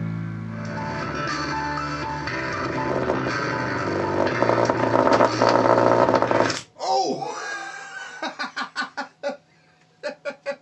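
A Cambridge SoundWorks computer-speaker woofer is driven hard with a distorted guitar track, growing louder, until the sound cuts off abruptly about two-thirds of the way in as the voice coil burns out. Afterward a man laughs in a quick run of short bursts.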